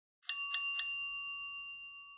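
Bell sound effect for a subscribe-button animation: three quick bell strikes, then a clear metallic ring that fades away over about two seconds.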